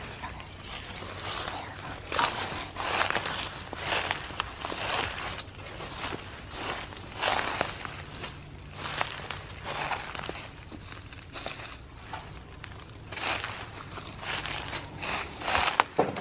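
Footsteps crunching over dry, loose ground, a steady walking pace of roughly one step a second.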